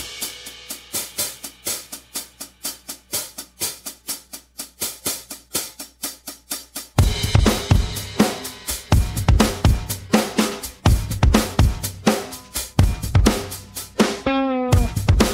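Drum kit playing the intro of a song: a steady rhythm of hi-hat and snare hits, joined about halfway by a heavy kick drum and fuller beat.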